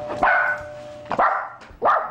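Dachshunds barking at a two-tone doorbell chime, whose tones ring on under the first bark and die away about a second in. There are three sharp barks, roughly half a second apart.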